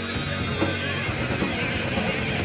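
Heavy metal band playing live, with distorted electric guitars and drums in a dense, unbroken wall of sound, heard from among the audience.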